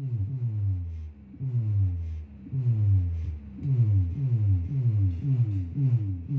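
Electronic sound effect from a button-operated effect box played through a power amplifier and speaker: a low, falling-pitch sweep repeated about twice a second, with short breaks about one and two seconds in.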